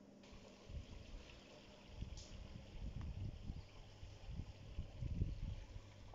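Quiet outdoor ambience with uneven low rumbles of wind on the microphone, and a faint tick about two seconds in and another about three seconds in.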